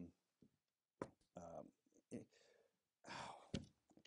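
A man's soft, hesitant murmurs, then a breathy sigh about three seconds in and a single click. The hesitation comes as he struggles to recall a name.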